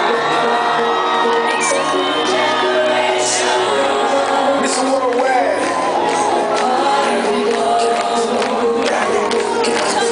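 Live pop concert music over a large stage sound system with sustained chords, and an audience cheering and whooping over it.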